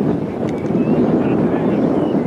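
Wind buffeting the microphone in a steady low rumble, with faint distant voices behind it.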